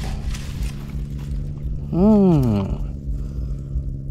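Faint rustling and clicks of dry leaves and grass as hands unhook a fish, over a steady low motor-like drone. A man murmurs a short 'mm' about halfway through.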